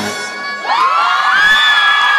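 Pop dance music cuts out. About half a second later several people break into high-pitched whoops and screams of cheering, their voices sliding up and holding for over a second.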